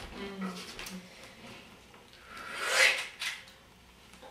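A single swish that swells up and dies away about three seconds in, followed by a light knock, from the dancer moving on the wooden floor.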